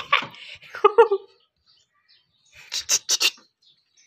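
Pit bull whining while nosing into a gap in a brick wall after a rat, followed about three seconds in by a quick run of four short breathy bursts.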